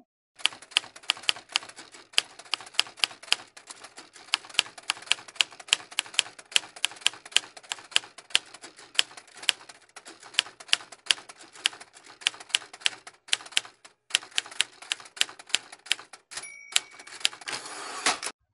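Computer mouse button clicking rapidly, several clicks a second, as tiles are dragged and dropped on screen, with a couple of short pauses. A brief steady tone sounds near the end.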